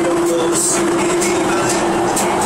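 Beijing subway train running, heard from inside the car: a steady loud rumble of wheels on rails with a steady hum tone through it and light repeated ticks.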